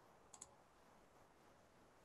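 Near silence, with two faint clicks close together about a third of a second in.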